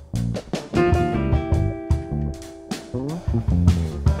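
Instrumental jazz from a small band: guitar notes over bass and drum kit, with some notes held for about two seconds in the middle.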